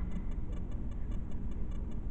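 Steady low background hum with a faint, fast, regular ticking, about five ticks a second.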